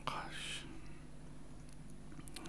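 A man mutters "gosh" under his breath near the start, then quiet room tone with a steady low hum.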